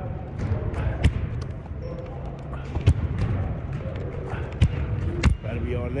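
Basketballs bouncing on a gym floor: sharp thuds at irregular intervals, about a second in, near three seconds, and twice near the end, over indistinct voices.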